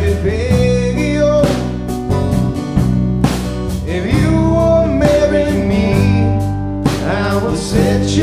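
Country-folk band music led by guitar.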